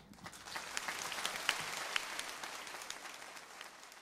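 Audience applause, swelling over the first second and tapering off toward the end.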